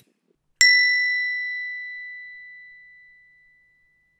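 A single bright bell-like ding, struck about half a second in and ringing out slowly until it has nearly died away by the end. It is a notification-bell chime sound effect.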